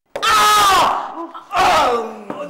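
Loud yelling, falling in pitch, starting about a quarter second in as a cricket bat strikes a man on the head. A second yell follows near the end.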